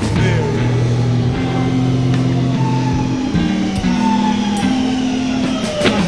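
Instrumental break in a slow rock ballad: electric guitar playing falling, sliding notes over held bass notes, with a few drum or cymbal hits.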